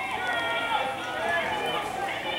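Several spectators' voices shouting at once, high-pitched and overlapping.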